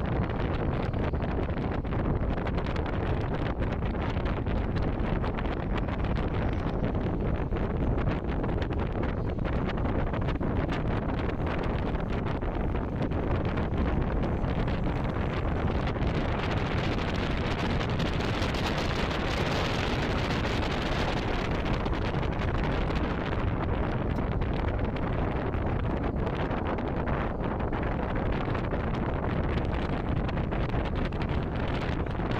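Wind rushing over the microphone with the steady rumble of a moving pickup truck, heard from its open bed. The wind gets louder and hissier for a few seconds around the middle.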